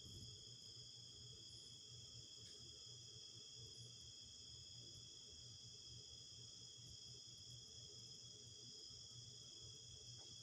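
A faint, steady chorus of crickets, a continuous high-pitched trilling, with a low steady hum underneath.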